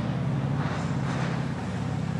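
Steady low hum with a fast flutter in it, the background drone of the hall or its sound system, with nothing else happening over it.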